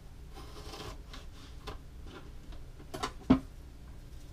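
Knife slicing through an onion on a plastic cutting board: a short scraping cut, then light taps of the blade on the board. About three seconds in comes a sharp clack, the loudest sound, as the knife is set down on the board.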